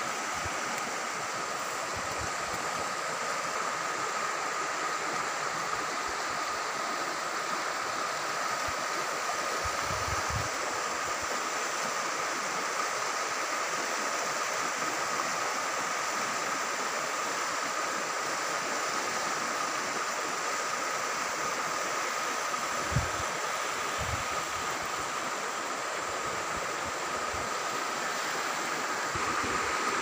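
Floodwater rushing steadily down a swollen river that is still rising, with a thin, steady high tone running through it. A few low bumps on the microphone come and go.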